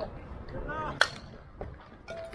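A baseball bat hits a pitched ball: one sharp crack about a second in, with a brief ring after it.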